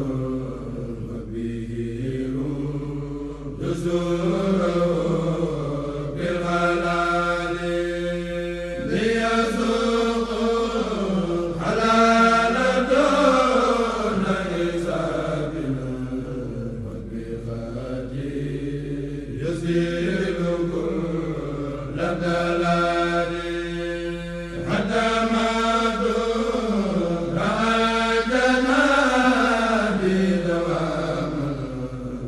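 A kourel of male chanters chanting a Mouride xassida (Sufi devotional poem) in unison with no instruments, in long held notes that slide up and down, phrases of a few seconds separated by short breaks.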